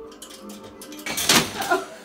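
A toy pin hurled by a cockatoo lands with a short, loud clatter about a second in.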